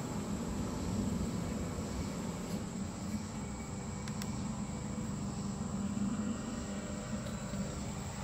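Steady low mechanical hum with a thin, high, constant whine above it; no distinct knocks or clicks.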